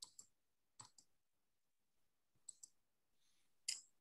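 Near silence broken by about six faint computer-mouse clicks, some in close pairs, the last just before a new slide comes up.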